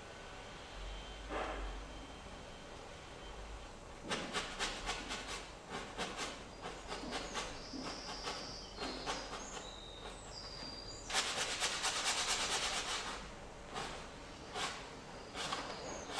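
A wide flat paintbrush dabbing and scrubbing against stretched canvas in quick rhythmic strokes. There is a run of separate strokes from about a quarter of the way in and a denser spell of fast scrubbing a little past the middle, with a few brief high squeaks between them.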